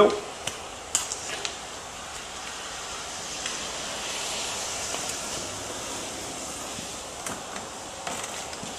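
A few light plastic clicks from a squeezed fuel stabilizer bottle in the first second and a half, over a steady hiss that swells slightly in the middle.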